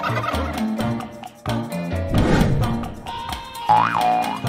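Tom turkey gobbling at the start over background children's music with a steady beat. A falling sweep comes about halfway, and a short rising-and-falling whistle-like effect comes near the end.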